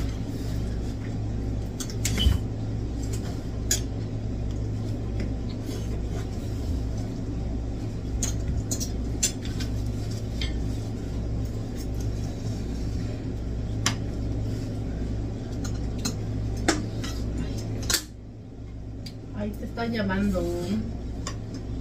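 Forks and cutlery clinking and scraping against plates during a meal, with scattered sharp clicks, over a steady low hum that drops away abruptly about two seconds before the end.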